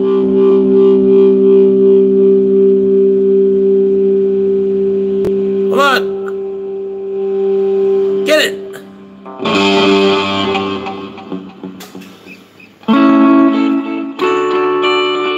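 Electric guitar through an amplifier with effects: a held chord rings with a slight wavering pulse for about six seconds and fades. Then come two short gliding notes, a scratchy strum and a click, and a new chord is struck near the end.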